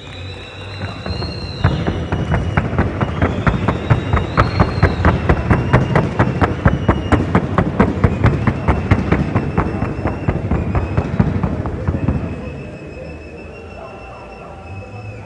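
Hooves of a Colombian trot-and-gallop horse striking the ground at a fast, even trot, about four or five sharp beats a second. The beat starts a couple of seconds in and fades out near the end.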